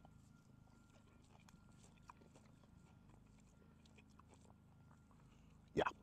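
Faint close-up chewing of a mouthful of mayonnaise-based coleslaw: soft, scattered little mouth clicks.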